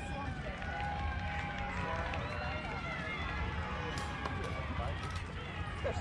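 Background talk and calls from spectators and players over a low wind rumble. There is a sharp crack of a bat hitting a baseball about four seconds in, for a base hit. Loud cheering starts right at the end.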